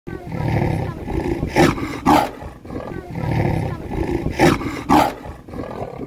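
Trapped leopard growling low in its cage, then giving two short, harsh snarls about half a second apart; the growl and the two snarls come again.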